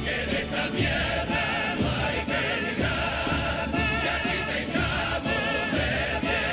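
A Cádiz carnival coro, a large choir of men, singing held notes with vibrato over a regular beat about twice a second.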